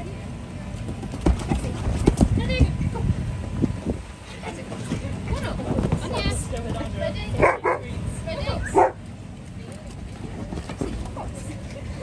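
Alaskan Malamutes barking and vocalizing as they play rough together, with two loud barks a little over a second apart past the middle.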